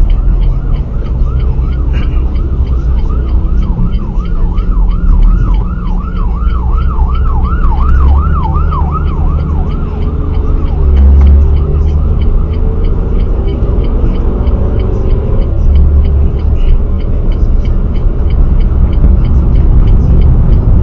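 Steady low road and engine rumble heard from inside a moving car. From about a second in until about nine seconds in, a siren sounds in a rapid up-and-down yelp of about three sweeps a second.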